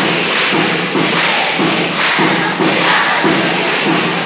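A large group of students chanting a cheer yell in unison, over an even beat of thumps about three a second.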